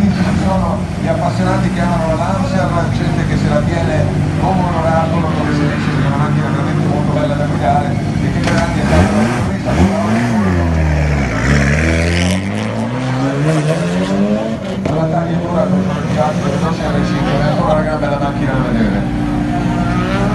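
A rally car's engine revving and passing by about ten seconds in, its pitch sweeping up and then dropping sharply as it goes past, over a steady low engine drone and voices.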